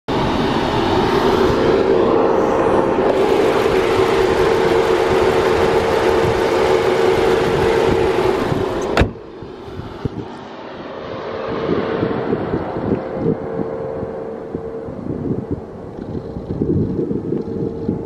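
A car running with a steady hum, loud for the first half. A sharp click about nine seconds in, after which it is quieter, with scattered crackling on the microphone.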